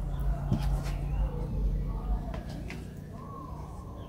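Soft handling noises and faint clicks as fingers press a coil of wet clay onto the wall of a small clay teapot, over a steady low hum that fades about three seconds in.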